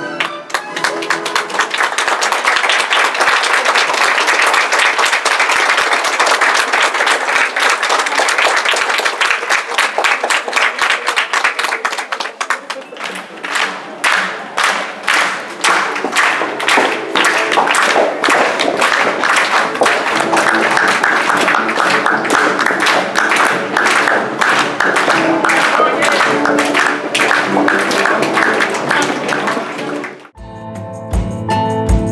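Audience clapping and applauding over music. About halfway through, the clapping settles into a steady rhythm, clapping along in time.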